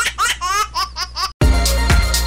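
A high, cartoonish laugh sound effect, a quick run of ha-ha syllables, cuts off abruptly after about a second and a quarter. An electronic music sting with a heavy bass starts right after.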